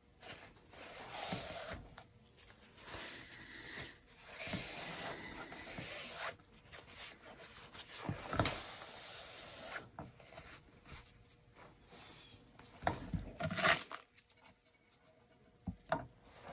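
Rubbing and scraping as the square board under a freshly poured acrylic painting is turned and handled by gloved hands on a plastic-covered work surface. It comes in several stretches of a second or more, with a couple of sharp knocks near the end.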